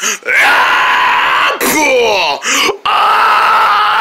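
A person's voice making long, high-pitched wordless cries as sound effects for a pretend toy fight: a held cry, a wavering sliding cry in the middle, then another long held cry.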